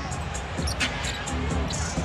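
A basketball being dribbled on a hardwood arena floor, a few short knocks in the first second, over quiet music with a steady low bass.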